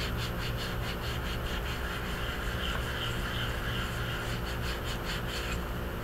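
Wet scrubber sponge rubbing over the seam line of a wet soft-fired porcelain greenware doll head in repeated light strokes.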